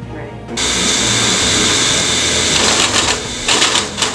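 Metalworking machine tool cutting metal: a loud, steady high-pitched hiss with a whine in it starts about half a second in, then breaks into a run of short bursts near the end.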